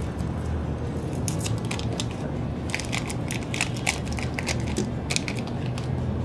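Thin plastic shrink-wrap film being peeled and crumpled off a new 3x3 speedcube, crinkling in several short crackly bursts.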